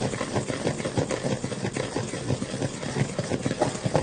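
Electric kitchen mixer running steadily with a fast, even whirr, beating a cake mixture.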